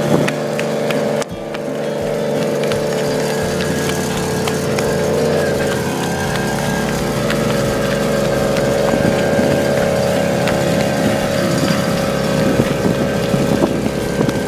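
Small Suzuki 50cc engine running steadily at an even pitch while carrying a young rider.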